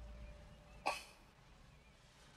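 A single short cough, just under a second in.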